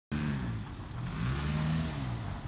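Engine of a first-generation Honda CR-V (RD1), a 2.0-litre four-cylinder, revving as the SUV spins its wheels in circles on snow. The revs dip about half a second in, climb through the second half, then fall away at the end.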